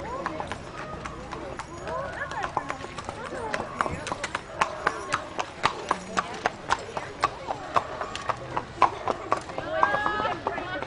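Two walking horses' hooves clip-clopping on the paved road, the hoofbeats growing clear about a third of the way in and loudest as one horse passes close by, about two to three strikes a second.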